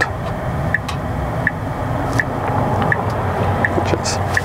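Cabin noise in a Tesla Cybertruck driving in traffic: a steady low road rumble. A short, high tick repeats evenly about every three-quarters of a second.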